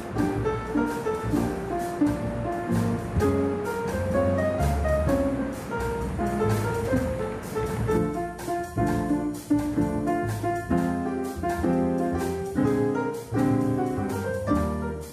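Background jazz piano music: a slow bossa nova tune played on the piano, the texture shifting about eight seconds in.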